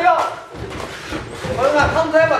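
Shouting voices in a large gym hall, with the dull thuds of boxing gloves landing during a sparring exchange.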